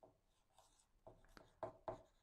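Dry-erase marker writing on a whiteboard, faint. A few soft strokes, with two short, sharper squeaks near the end.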